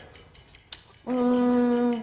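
A woman hums a level, closed-mouth 'mmm' for about a second, starting halfway in: a hesitation while she thinks of an answer. A faint click comes just before it.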